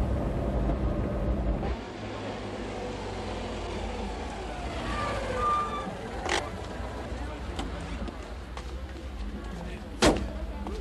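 A car drives close past with a loud low rumble, which cuts off abruptly after about a second and a half. City street traffic noise follows, with a vehicle passing midway and a sharp click about six seconds in.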